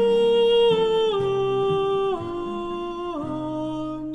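Countertenor voice singing a slow line of long held notes that steps down in pitch several times, over a quiet, low instrumental accompaniment.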